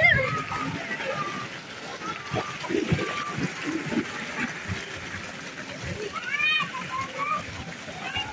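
Water splashing and sloshing as a child wades through a shallow pool, with children's voices and a high child's call a little past halfway.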